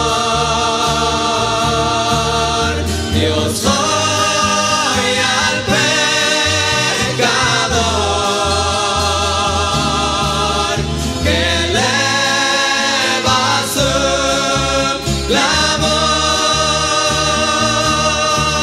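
Christian rondalla ballad music: a string ensemble with a steady bass line under several voices holding long, wavering notes in harmony, with no clear words.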